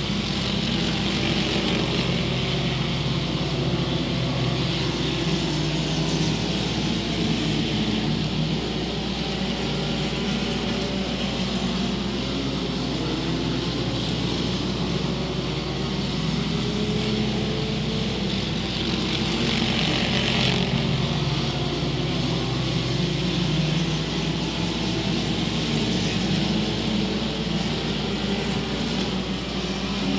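Front-wheel-drive dirt-track race cars' engines running at speed around the oval, a continuous mixed drone whose pitch rises and falls as the cars pass.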